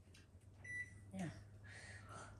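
Quiet indoor room tone with a steady low hum, broken by a short high-pitched tone a little under a second in and a single brief spoken word.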